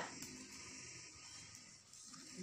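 Faint room tone with a faint steady high hum; no distinct sound event.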